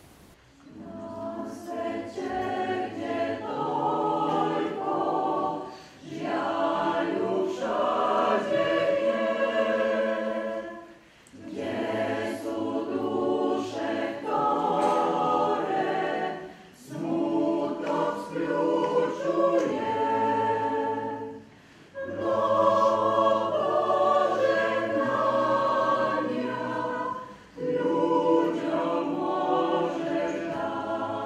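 Mixed choir of men's and women's voices singing in phrases of about five seconds, with short breaths between them.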